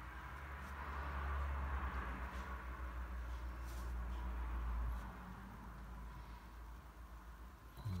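A watercolour brush working wet paint on paper, a soft swishing that swells over the first couple of seconds and then fades, over a low steady hum that cuts off about five seconds in.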